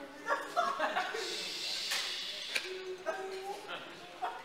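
Indistinct talk from a small group of people, with light chuckling.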